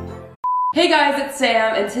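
A single short electronic beep, one steady pitch held for about a third of a second, right after the intro music fades out; a woman's voice begins just after it.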